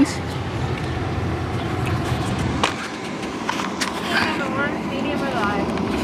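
Steady low rumble of a car idling, heard from inside the cabin, with a few light clicks and a faint voice about four to five and a half seconds in.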